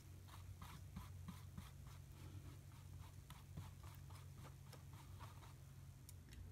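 Faint, repeated brush strokes, about three a second, as a paintbrush spreads blue paint across the bottom of a clear plastic takeout container, over a steady low hum.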